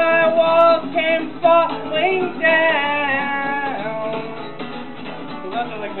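A man singing live over his own strummed acoustic guitar. He holds a long sung note at the start. His voice fades out after about four seconds, leaving the guitar strumming on.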